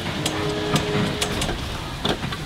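Open-sided tour tram running, with a steady rumble of vehicle noise and sharp rattling clicks about twice a second.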